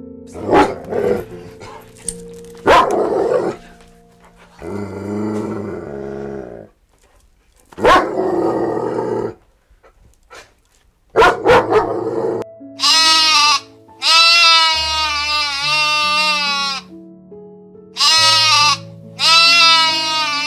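Dogs barking in short, irregularly spaced barks, then from about halfway through sheep bleating in long, wavering calls. Soft background music plays underneath.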